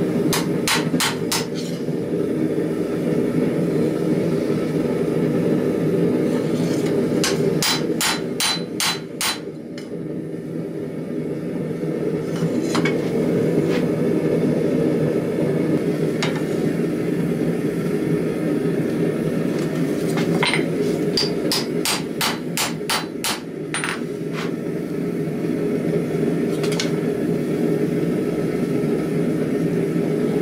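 Cross-peen hammer striking a steel knife blank on an anvil to flatten it, in quick runs of blows with single strikes between. Under it runs a steady low roar from the lit forge.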